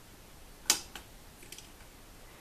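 One sharp click a little under a second in, then a couple of faint ticks: handling noise from a metal crochet hook working cotton yarn through gathered loops.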